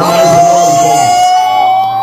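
A voice holding one long, loud note that rises slowly in pitch, an excited drawn-out cry of "uhhh".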